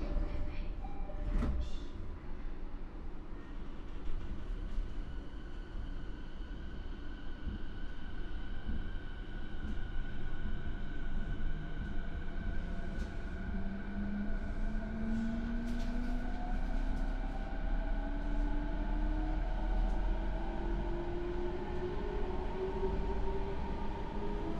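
Mitsubishi IGBT VVVF inverter and MT68 traction motors of a JR East E217 series electric train pulling away from a stop, heard inside the motor car. After a knock about a second and a half in, steady high inverter tones sound, then a motor whine rises steadily in pitch as the train gathers speed, over the rumble of the wheels on the rails.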